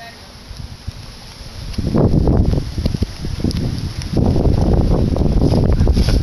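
Wind buffeting the microphone: a loud, irregular low rumble that sets in about two seconds in and gusts on to the end.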